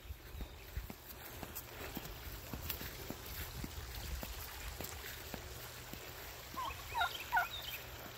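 A turkey calling near the end: three quick, hooked notes within about a second, over a faint outdoor background with scattered light ticks.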